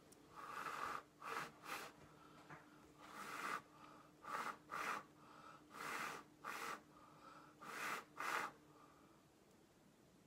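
A person blowing with the mouth onto wet acrylic pour paint to push it across the canvas, in soft breathy puffs. There are four rounds, each a longer blow followed by one or two quick short puffs.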